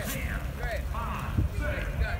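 Faint, indistinct voices of people talking in the background, over a low steady rumble.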